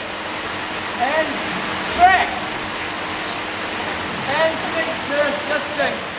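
Steady rush of water in a large indoor filming tank, with voices calling out over it a few times.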